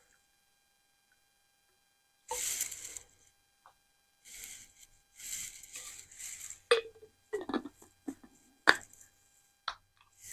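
Water poured from a sport bottle into a small stainless steel cup, heard as a few short splashy bursts. Then several sharp clicks and knocks as the bottle and cup are handled and set down.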